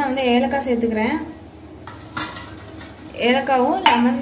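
A couple of light metal clinks from a utensil against a steel pot, about two seconds in, as cardamom pods are added to the bubbling liquid in it. A woman's voice comes just before and just after.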